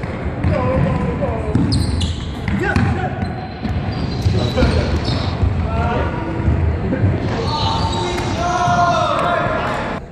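Trainers squeaking and thudding on a wooden sports-hall floor as players run and cut, with players calling out to each other, echoing in the large hall.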